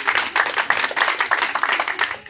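An audience clapping: a dense run of quick hand claps.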